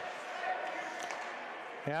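Rink sound of an ice hockey game in play: a steady hiss of skates and spectators, with a few faint taps of sticks and puck about a second in. A male commentator's voice starts again near the end.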